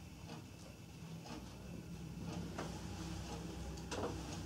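Faint handling sounds of hands pushing hairpins into a donut hair bun: a few light, scattered clicks and rustles, the most distinct near the end, over a low steady hum.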